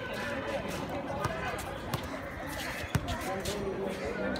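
Background chatter of players and spectators, with a few sharp thuds of a basketball bouncing on a hard outdoor court, the loudest about three seconds in.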